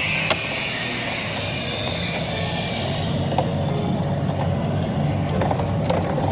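Road noise of a car driving through city traffic: a steady low rumble, with a hiss that falls away over the first couple of seconds.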